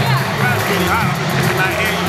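Really loud arena din: crowd hubbub and music over the PA, continuous, with a man talking close by over it.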